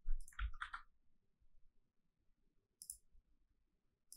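Computer mouse clicking: a quick run of four or five clicks in the first second, then a single click about three seconds in.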